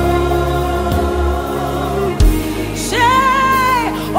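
Live gospel worship music: sustained backing chords over low bass notes, with a few soft hits. About three seconds in, a woman's voice enters on a held, high, wordless sung note.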